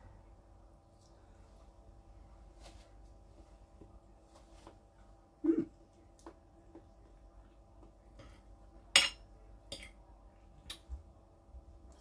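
A few sharp, separate clinks of a metal fork against a plate while someone eats, the loudest about nine seconds in, over a faint steady room hum.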